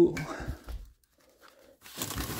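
A person's laugh trailing off at the start, then rustling and handling noise that stops about a second in.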